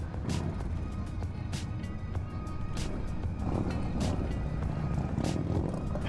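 Touring motorcycle riding slowly in traffic: a steady low engine and road rumble, with background music over it.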